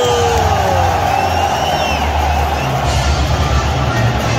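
National anthem played over a stadium's public-address system, deep sustained notes starting at the outset, over a large crowd with whistles and shouts.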